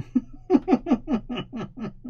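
A man laughing: a quick run of about eight short 'ha' bursts, each dropping in pitch.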